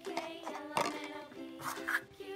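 Soft background music with held notes, with a few light clicks of a small plastic toy figure being handled and set down on a paper cup.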